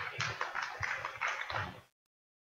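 Scattered applause from a small audience, many quick irregular claps, ending abruptly when the recording cuts off near the end.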